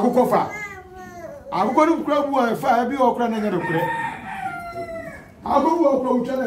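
A man chanting in loud, drawn-out calls: a first call falling in pitch, then a longer run of sung calls that fades a little before another begins near the end.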